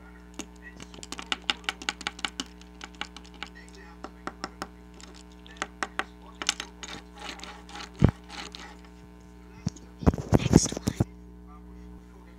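A small plastic toy bone being tapped and handled: quick irregular runs of light clicks, a single thump about eight seconds in, and a louder burst of scraping and handling near the end.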